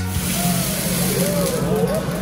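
Restaurant room noise: a steady low hum with faint voices gliding in pitch in the background, just after music cuts off at the start.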